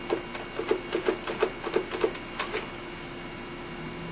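A door that sticks being rattled and worked open: a quick, irregular run of clicks and knocks lasting about two and a half seconds, then stopping.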